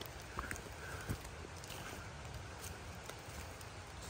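Soft footsteps of rubber rain boots on a wet, leaf-littered dirt trail, a few faint thuds over a steady background hiss.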